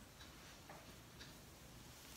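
Near silence: room tone in a pause between spoken sentences.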